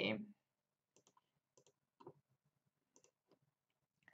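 A few faint, separate computer mouse clicks, some in quick pairs, spread over several seconds as dialog options are clicked.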